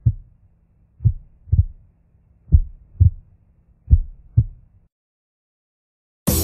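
Heartbeat sound effect in a Eurodance track's intro: pairs of low thumps, lub-dub, about every second and a half over a faint low hum. It stops about five seconds in.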